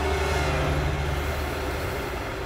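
Dramatic sound effect from a TV drama soundtrack: a sustained low droning hum with an even hiss over it, fading slowly towards the end.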